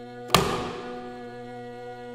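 Haegeum (Korean two-string fiddle) holding one long bowed note. About a third of a second in, a single sharp percussive stroke from the accompaniment rings and dies away.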